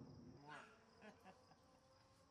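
Near silence outdoors, with faint, evenly repeated insect chirping. A brief faint pitched sound comes about half a second in, followed by a few soft clicks.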